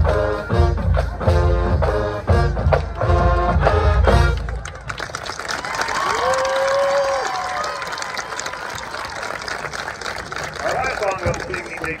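Marching band playing brass and drums in a strong beat, stopping abruptly about four and a half seconds in at the end of the song. Crowd applause and cheering follow.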